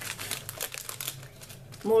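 Clear plastic wrapping on craft material packs crinkling and rustling in irregular bursts as the packs are handled.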